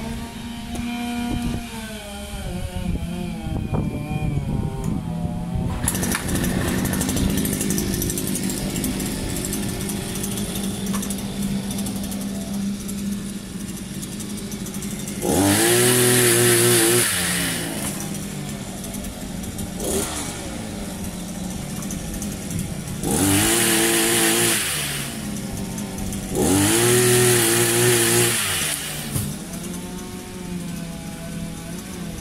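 Small engine of a multi-tool pole chainsaw running steadily, then revved up three times for about two seconds each, starting about 15, 23 and 26 seconds in.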